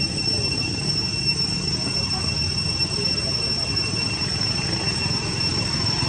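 A steady high-pitched insect drone holding one unchanging pitch, over a low rumble of outdoor background noise.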